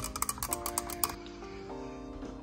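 Background music with steady held notes. Over it, a quick run of light clicks from a stir stick stirring coffee in a ceramic mug, stopping about a second in.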